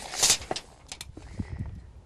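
A short rustle followed by a few light clicks and soft knocks: a steel tape measure being handled and held down against the door track at the floor.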